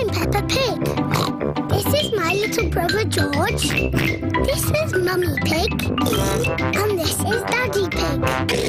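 Children's cartoon theme tune with a young girl's voice introducing herself and her family, mixed with comic pig snorts.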